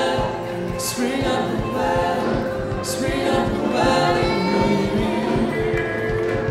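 Gospel worship music: a group of voices singing over a steady drum beat.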